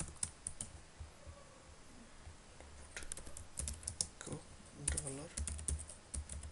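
Typing on a computer keyboard: a few keystrokes at the start, then a quick run of keystrokes through the second half.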